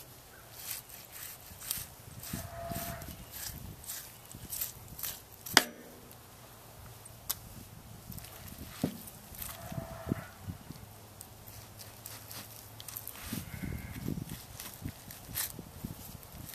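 Knife work on a lamb carcass: a butcher's knife cutting the shoulder free through muscle and connective tissue, with scattered clicks and knocks of the blade and meat on the table, one sharp knock about five and a half seconds in.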